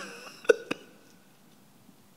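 A man's single short chuckle close to a microphone about half a second in, with a small mouth click just after, then quiet room tone.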